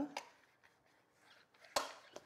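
Mostly quiet, with faint strokes of a silicone basting brush spreading olive oil over a metal roasting pan, then one sharp knock near the end.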